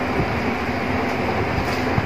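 Steady rumbling background noise, with light rustling of a thin plastic cake wrapper being pulled off by hand.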